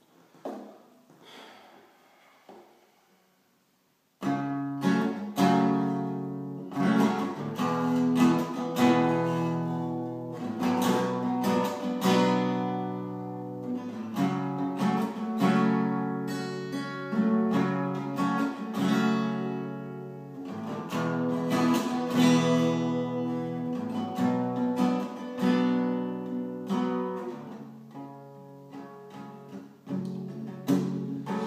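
Guitar strummed in chords as the instrumental intro of the song, coming in suddenly about four seconds in after a few faint knocks.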